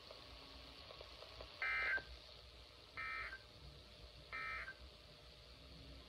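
NOAA Weather Radio SAME end-of-message code played through a weather radio's speaker: three short bursts of warbling digital data tones, evenly spaced a little over a second apart, marking the end of the warning broadcast.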